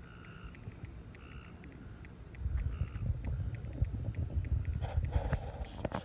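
Handling noise from a phone microphone as the camera is lifted and moved: a low, irregular rumble with soft knocks, starting about two and a half seconds in. Faint short high tones sound now and then, including near the end.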